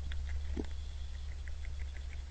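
Deer crunching shelled corn as they feed, a scatter of small crunches and ticks with one slightly stronger crunch about half a second in, over a steady low electrical hum.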